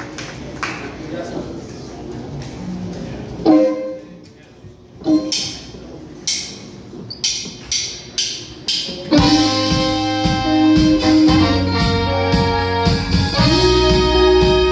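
A live band with horns kicking off a song. Two loud ensemble hits come about three and a half and five seconds in, then sparse sharp cymbal and drum strikes. About nine seconds in the full band comes in together with sustained horn chords over bass, guitar and drums.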